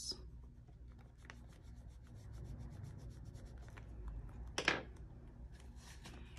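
Wax crayon scribbling on a paper savings chart: a fast run of light, even strokes, with one short louder swish about two-thirds of the way in.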